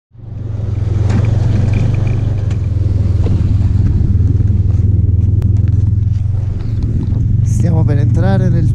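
Snowmobile engine running steadily as it travels over packed snow, a constant low drone. A voice comes in near the end.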